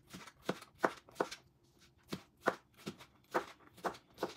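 Chef's knife dicing cucumber on a cutting board: sharp knocks of the blade hitting the board, about two to three a second, with a pause of about a second near the middle.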